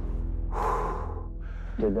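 Soundtrack music with steady low tones, and a person's loud breath about half a second in; a man's voice starts speaking near the end.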